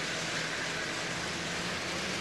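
Propeller-driven model rail car's small electric motor and propeller running steadily at idle speed: an even hum with one steady low tone over a soft whir.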